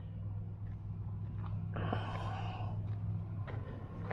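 A steady low hum with a short breathy exhale about two seconds in.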